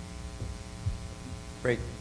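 Steady electrical mains hum on the sound system's feed, a low buzz with many even overtones, with a couple of faint low thumps in the pause. A man's voice comes in near the end.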